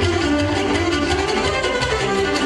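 Live Romanian folk dance music from a wedding band, with saxophone and clarinet carrying the melody over a steady bass beat.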